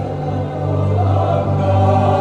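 Mixed church choir of men and women singing a slow hymn in parts, swelling a little louder toward the end.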